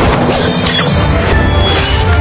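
Film score with sword-fight impact effects: a sharp hit at the very start and another about two-thirds of the way through, over dense, loud music.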